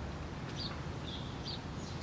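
A few short, faint, high bird chirps over a steady low outdoor background rumble.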